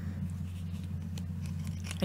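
A steady low electrical hum, with a faint sniff near the start as someone smells a cream on the wrist, and a few soft clicks from handling a small plastic bottle.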